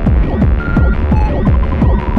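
Fast free tekno from a vinyl DJ mix: a rapid, steady kick-drum rhythm with a heavy bass and short repeated synth bleeps.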